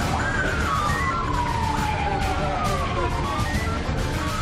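Siren sound effect over dramatic music with a steady beat: a wailing tone that falls slowly over about two seconds, with a second falling wail starting partway through.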